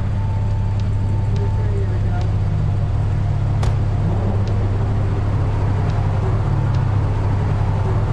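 Sports car engine idling with a steady low rumble, stopped at the curb. A single sharp click about three and a half seconds in.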